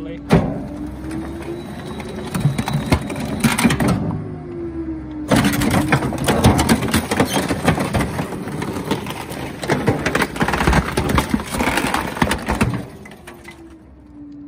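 A garbage truck's hydraulic packer blade crushing wooden kitchen chairs in the hopper: many sharp cracks and snaps of splintering wood over the steady whine of the hydraulic system, whose pitch shifts as the blade cycles. The cracking stops near the end, leaving the truck running more quietly.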